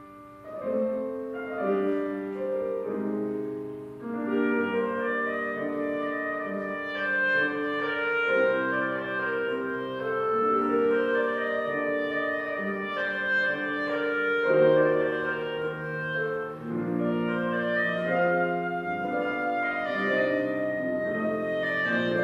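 A clarinet playing a melody with grand piano accompaniment after a brief lull at the start, in a live classical duo performance.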